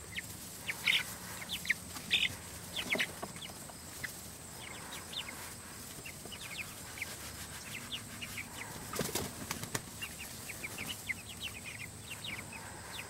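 A flock of Cornish Cross broiler chicks, two to three weeks old, peeping: many short, high, downward-sliding cheeps scattered through, with a brief rustle about nine seconds in.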